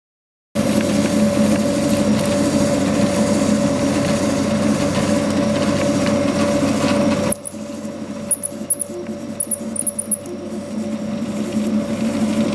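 Open-frame 3D printer printing a part: its stepper motors and fan make a steady mechanical hum with a held tone. About seven seconds in the hum drops in level and a few brief high chirps follow.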